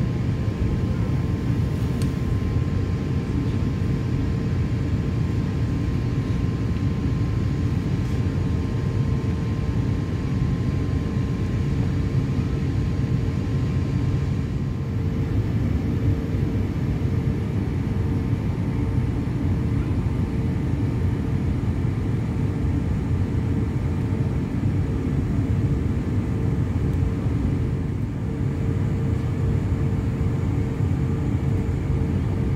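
Cabin noise inside an Airbus A350-900 taxiing after landing: the steady low rumble of its Rolls-Royce Trent XWB engines at idle thrust and the roll over the taxiway, with a steady hum running through it.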